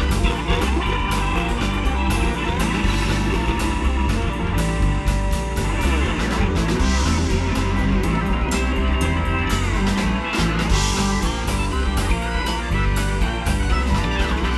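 Live blues band playing an instrumental passage: guitar and Hammond B3 organ over bass and a drum kit.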